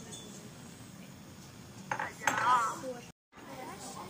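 A light clink about two seconds in, then a brief high, wavering voice over a steady low hiss; the sound drops out completely for a moment near the end.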